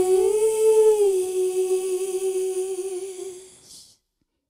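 A woman's voice holds one long final note on its own, with no accompaniment. The note steps up slightly a quarter-second in, drops back about a second in, wavers with vibrato, and fades out just before the end.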